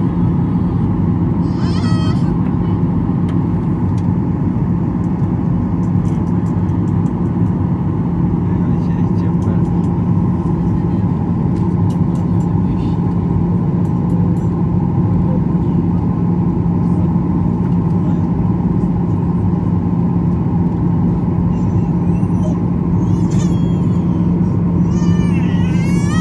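Steady jet airliner cabin drone heard from a window seat beside the engine, an even deep hum with a faint higher tone above it.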